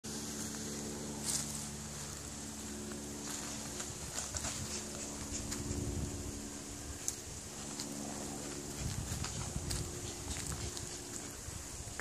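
Footsteps and scattered clicks of twigs and brush on a woodland trail, over a steady low drone that holds for several seconds at a time with brief breaks.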